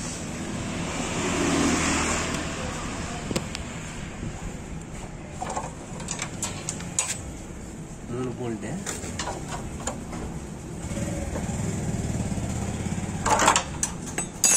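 A spanner clinking on the bolts as a motorcycle's chain guard is unbolted, with sharp metal clicks scattered through, the loudest cluster near the end. Voices and a vehicle engine run underneath, the engine swelling twice.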